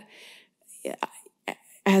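A woman drawing a breath into a close microphone in a pause in her talk, followed by a few faint hesitant voice sounds. Clear speech comes back near the end.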